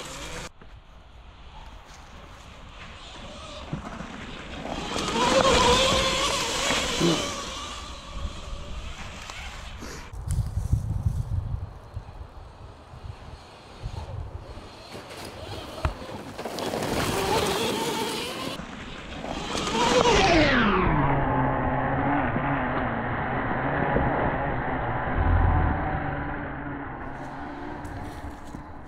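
Cake Kalk OR electric motocross bike's electric motor whining, rising and falling in pitch with speed, over tyre noise on a leaf-covered dirt trail. About twenty seconds in, the whine falls steeply in pitch as the bike slows.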